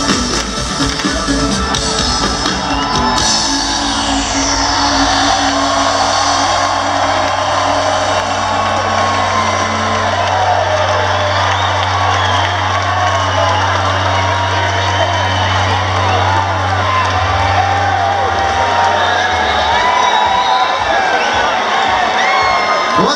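Live band music ends about three seconds in, leaving one low bass note ringing on until it cuts out near the end. Over it, a large concert crowd cheers, whoops and whistles.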